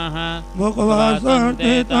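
A man chanting Sanskrit puja mantras in a sustained recitation tone, his voice rising and wavering in pitch from about half a second in.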